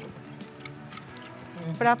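Faint background music with a few soft ticks from a foam paint roller being dabbed against a glass bottle.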